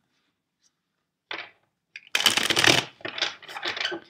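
A tarot card deck being shuffled by hand: a short rustle of cards a little over a second in, then a dense run of clicking, riffling cards for nearly two seconds from about halfway.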